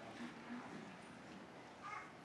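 Faint murmured voices away from the microphone in a quiet hall, with a brief higher-pitched sound near the end.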